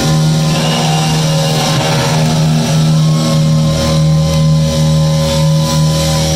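Live rock band with two electric guitars and drums, the guitars holding long sustained notes, one high note bending slightly, over drums and washing cymbals.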